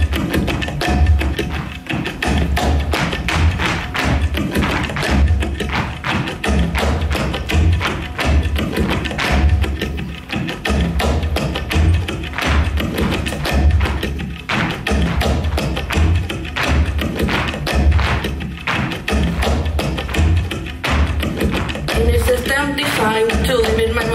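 Flamenco-style music with a deep, repeating beat, and the shoes of a line of flamenco dancers tapping and stamping on the stage in rhythm throughout.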